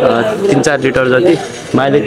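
A man talking in Nepali, close to the microphone, with a short pause about three-quarters of the way through.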